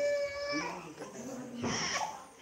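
A high-pitched voice holding one long, steady note that stops about half a second in, followed near the end by a short, lower vocal sound.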